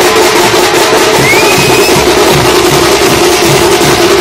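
Several dappu frame drums beaten with sticks in a loud, fast, unbroken rhythm.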